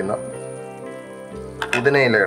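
Chicken curry sizzling in a frying pan as it is stirred with a silicone spatula, under steady background music, with a voice coming in near the end.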